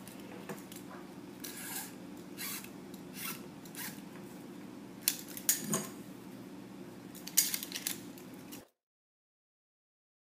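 Metal lamellar plates clicking against each other and paracord scraping as it is pulled through the plate holes, a scatter of short clicks and scrapes over a low steady hum. The sharpest clicks come about five and seven and a half seconds in. The sound cuts out completely a little before the end.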